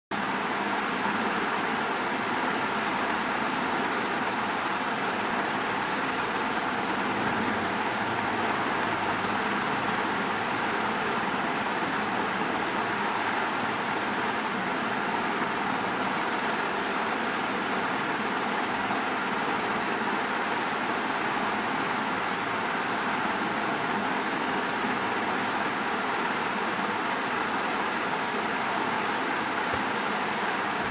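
Steady, even rushing background noise with no other events.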